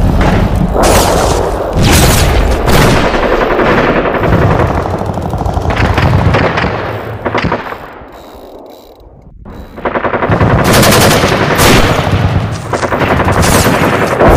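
Rapid machine-gun fire laid on as a sound effect, since the guns on screen are wooden props. It is loud and continuous, fades to a lull about eight seconds in, and starts again about two seconds later.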